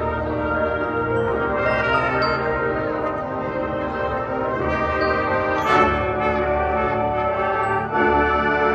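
High school marching band playing, its brass holding full sustained chords, with a sharp accented hit about three-quarters of the way through.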